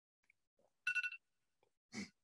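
A short electronic beep with two steady pitches, lasting about a third of a second, about a second in, followed near the end by a brief soft noise.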